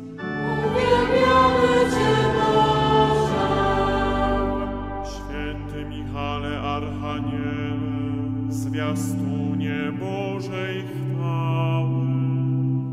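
Choir singing a Polish Catholic chaplet in slow, sustained chords, swelling loudest about a second in.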